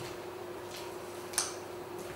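Spatula stirring a thick chestnut-flour batter full of walnuts and pine nuts in a stainless steel bowl: faint scraping, with one sharp click against the bowl a little past halfway.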